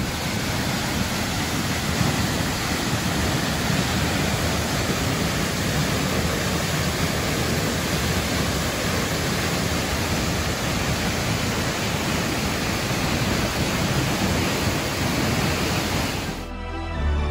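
Steinsdalsfossen, a 50-metre waterfall, heard at close range: a loud, steady rush of falling water crashing onto the rocks below.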